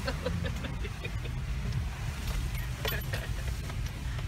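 Cabin noise of a Toyota Prado driving slowly along a muddy dirt track: a steady low rumble of engine and tyres. There are a couple of sharp knocks a little after two and near three seconds in.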